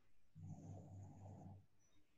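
Near silence, with a faint low sound lasting about a second in the middle.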